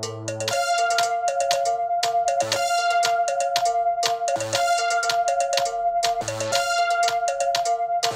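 Chicago house-style electronic track played live on a synth keyboard: a bell-like synth riff over a held high note, repeating about every two seconds, with quick hi-hat ticks and short bass notes. A low held chord drops out about half a second in as the riff starts.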